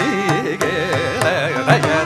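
Carnatic classical music: a male voice singing with wavering, gliding ornaments on held notes, accompanied by violin and mridangam strokes.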